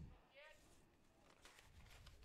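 Near silence, with one brief faint pitched call about half a second in.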